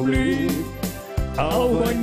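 Live German-style bandinha music: an accordion carrying the tune over a keyboard bass in an even beat.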